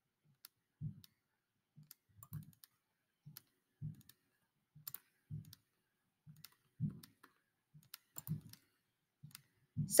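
Faint computer mouse clicks, irregular, roughly one a second, each a short click with a soft low thud.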